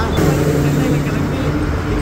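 A vehicle engine, probably the parked truck's, running with a steady low hum, with indistinct voices mixed in.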